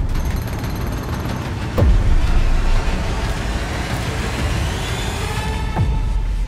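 Trailer-style soundtrack over a dense mechanical rumble, with two deep booming hits, one about two seconds in and one near the end. Each hit is led by a quick downward sweep in pitch.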